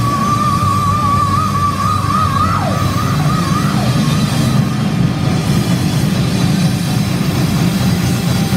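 Live heavy metal band (electric guitar, bass guitar and drums) playing loud and steady. Over the first few seconds a sustained high note wavers in vibrato, followed by a few short downward slides.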